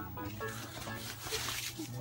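Soft rustling of a white protective sheet on an iMac display as it is handled before being slid off, over a steady low hum.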